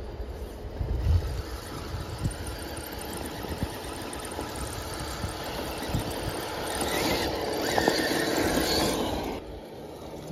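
Traxxas TRX6 RC crawler's electric motor and drivetrain whining as it climbs over dry leaves and dirt, growing louder about seven seconds in and dropping away sharply near the end.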